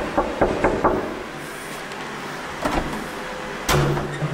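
Knocking on a door: a quick run of about five knocks in the first second, then two more single thumps, the last and loudest near the end.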